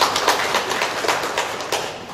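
Audience applauding after a speech, the clapping dense at first and dying down near the end.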